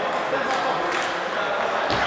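Table tennis balls clicking on tables and bats, scattered irregular clicks from several games at once, over a background murmur of voices in a sports hall.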